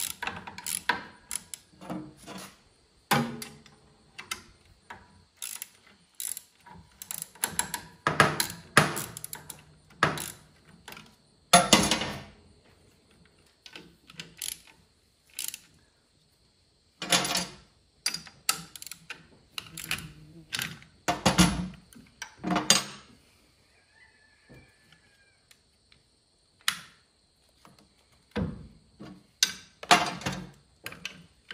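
Hand socket ratchet clicking in short runs, with knocks of metal tools on metal, as nuts and bolts on a tractor alternator are undone. The clicking comes in bursts with quiet pauses between them.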